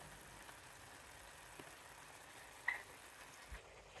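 Faint, steady sizzle of a chicken and vegetable stir-fry cooking in sauce in a wok, with one short clink about two and a half seconds in.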